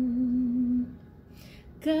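A woman's voice singing unaccompanied: she holds a low note steadily for most of the first second, breaks off with a short intake of breath, and starts a slightly higher note near the end.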